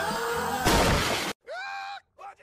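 Music playing is cut off about halfway through by a loud shattering crash lasting well under a second. After a sudden short silence, a man's drawn-out yell begins near the end.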